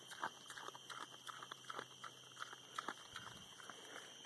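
Feral razorback hog crunching and chewing dry shelled corn in a trap, making irregular crunches several times a second.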